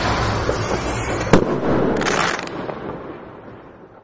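Firework-like sound effects for an animated end screen: a noisy crackling rush with one sharp crack just over a second in and a hissing burst around two seconds, then fading away.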